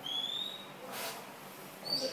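A short, high, rising whistled chirp, then a brief hiss about a second in, and another short high chirp near the end.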